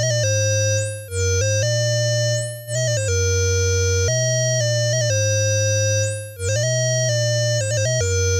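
Moog Werkstatt-01 analog synthesizer playing held notes with a few quick runs, its VCO layered with a lower tone from the LFO patched in as a second oscillator. The filter cutoff is swept open and closed several times, brightening and dulling only the VCO's upper tones while the low LFO tone stays unchanged, since it bypasses the filter.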